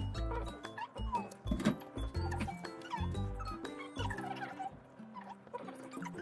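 Background music: a light instrumental track with repeating bass notes.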